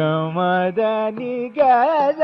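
Carnatic classical music from a live concert recording. A male voice with violin moves through short held notes that step in pitch, bending and wavering near the end, over a few light mridangam strokes.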